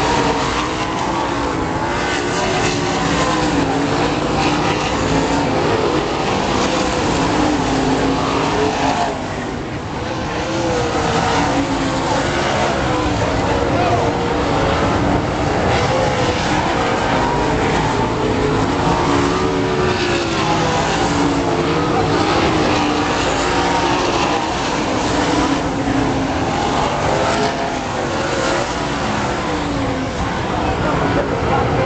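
Several sprint car engines racing around an oval track, a loud continuous engine note whose pitch keeps rising and falling as the cars accelerate down the straights and lift for the turns.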